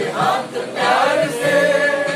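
A mixed group of amateur men and women singing a Hindi film song in chorus, settling into a long held note about halfway through.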